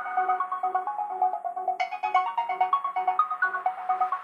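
Electro house music in a breakdown: a synth melody of short, quickly repeated notes with no kick drum or bass under it. A brighter, higher synth layer comes in just under two seconds in.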